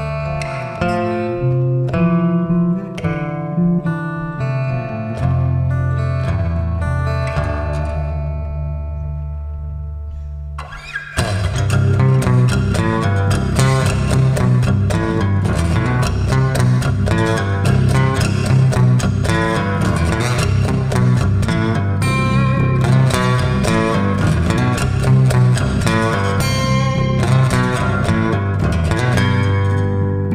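Acoustic guitar and electric bass guitar playing an instrumental passage with no vocals. It opens with separate picked guitar notes over held bass notes. About eleven seconds in, both come in louder with fast, dense playing.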